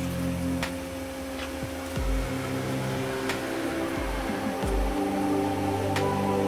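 Background music: steady held tones over a low bass note that comes and goes, with a few faint clicks.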